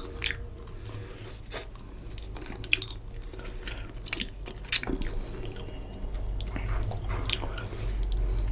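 Close-miked wet chewing of a mouthful of fish curry and rice, with sharp mouth smacks every second or so; the loudest comes a little over halfway through. Fingers squishing rice through the oily curry on a steel plate can be heard underneath.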